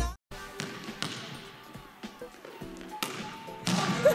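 A basketball bouncing on a gym's hardwood floor, a knock about once a second that echoes in the large hall, with voices rising near the end.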